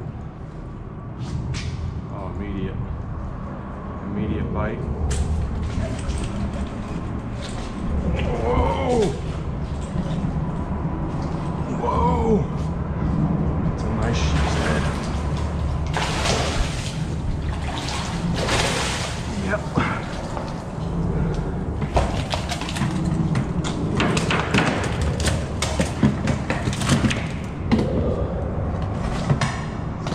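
A hooked sheepshead splashing at the water's surface beside a small boat, with the splashes coming thick in the second half. Under it runs a steady noise of rain.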